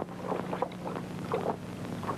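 Steady low hum and hiss of an old film soundtrack, with a few faint, brief sounds about half a second and a second and a half in.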